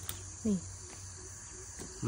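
Steady high-pitched insect chorus, with a brief spoken syllable about half a second in.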